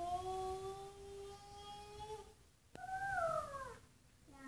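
A small child's voice chanting two long drawn-out notes: the first held steady for about two seconds with a slight rise, the second higher and sliding down. A single sharp tap falls between them.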